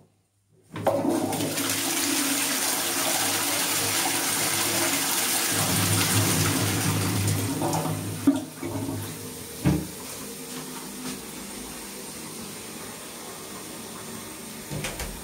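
A Dudley Elite low-level cistern flushing into a Twyfords 2566 pan: a loud rush of water starts about a second in and runs for about seven seconds. It then drops to a quieter steady hiss of water, with two knocks along the way.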